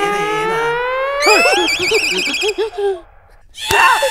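Comedy sound effects from a TV serial's background score: a long tone gliding steadily upward, then a fast warbling tone and short bouncing notes, a brief pause, and a sudden sharp hit near the end that marks a startle.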